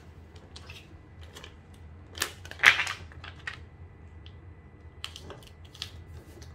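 Sheet of transfer tape crackling and rustling as it is handled and pressed down by hand over cut vinyl lettering, in scattered crinkles and clicks with a louder crackle about halfway through.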